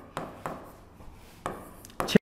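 A writing tool striking and scraping on a classroom board as a word is written: a few sharp taps and short scratching strokes, unevenly spaced.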